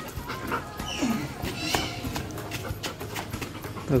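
A Labrador retriever playing and jumping up on a person on concrete: scattered clicks and scuffs of its claws and feet, with brief dog sounds, over faint background music.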